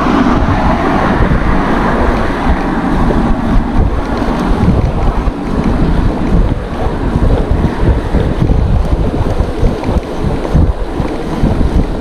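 Wind buffeting a GoPro action camera's microphone while riding a bicycle on a road: a loud, steady, gusting rumble with no distinct tones.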